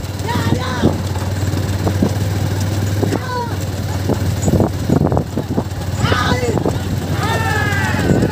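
Men's shouts and calls urging on a bull hauling a loaded wooden cart, coming and going and growing busier near the end, over a steady low drone.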